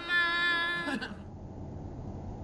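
A woman's singing voice holding one long, steady note that ends about a second in, leaving a low, even rumble.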